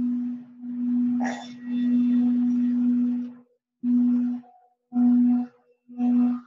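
Singing bowl rubbed around its rim with a wooden striker, sounding a steady low tone with a few faint overtones. After about three and a half seconds the tone breaks off and comes back in short half-second bursts.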